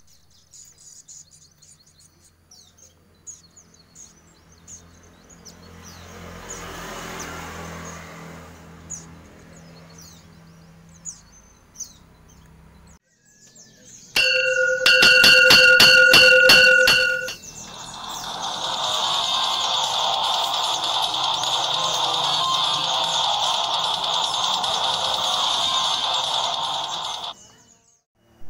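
Faint, short, high chirps from caged white-eye birds over a low hum, then a loud channel-intro jingle: a bright chiming ding with a run of sharp clicks, followed by about nine seconds of steady hissing that cuts off suddenly near the end.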